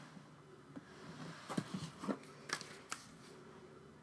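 Faint handling sounds: a few soft taps and rustles, about one and a half to three seconds in, as an album is picked up and laid flat on a table.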